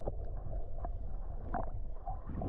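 Muffled underwater sound: a steady low rumble of water movement with a few short bubbling blips.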